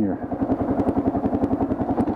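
Kawasaki KLR650's single-cylinder four-stroke engine running, a steady rapid pulse of firing strokes, picked up by a helmet-mounted camera.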